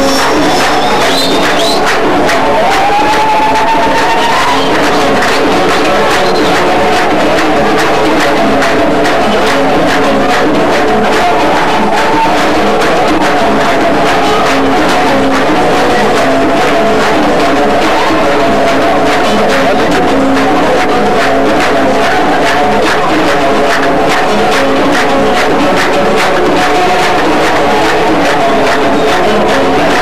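A Moroccan folk band playing live: strummed and plucked guitar and banjo over hand drums in a steady rhythm, with audience noise underneath.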